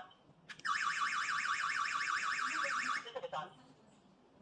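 Security alarm host's siren going off, a loud, fast, repeating warble lasting a little over two seconds before it cuts off, with a short chirp just before it starts and another just after it stops. It is the alarm being triggered: the door magnetic sensor opened while the system is armed in Away mode.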